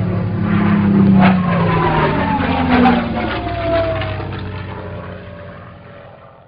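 Propeller airplane fly-by sound effect: a piston engine's drone swells, drops in pitch as it passes, then fades away.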